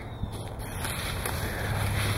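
Wind rushing over the camera microphone outdoors, a steady low rumble and hiss that grows slightly louder.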